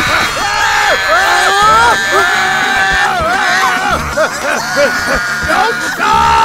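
Cartoon characters' wordless frightened cries and yells over background music.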